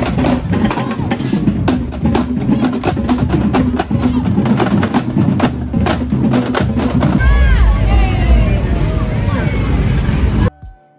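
Marching band drumline playing a fast cadence on snare and bass drums. About seven seconds in the drumming gives way to heavy bass and voices.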